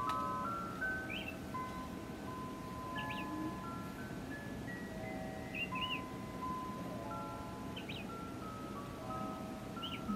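A plush teddy-bear soother playing its lullaby: a slow, simple melody of single clear notes, with a few short chirps mixed in.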